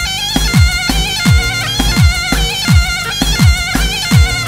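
Zurna, the double-reed shawm, playing a loud, reedy grani dance tune with quick wavering ornaments, over a heavy drum beat of deep booming strokes about twice a second.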